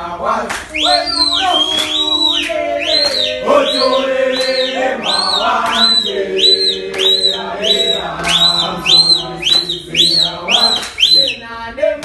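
Men's group singing a gwijo, a South African football chant, in sustained low voices. Over it someone whistles a run of short high notes that rise and fall, about two a second and quickening toward the end.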